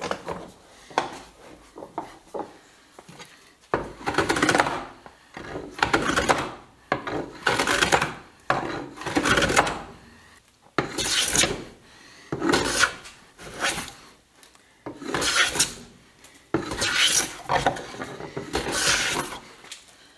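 A hand plane taking shavings off a wooden handle blank: light clicks, then about ten separate cutting strokes from about four seconds in, each a short rasping swish one to two seconds apart.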